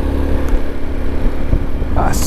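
Italika V200 motorcycle running steadily under way, a continuous low engine drone with road noise.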